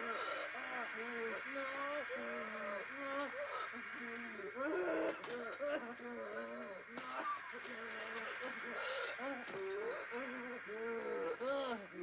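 A man laughing hysterically without words, in repeated bouts that rise and fall in pitch.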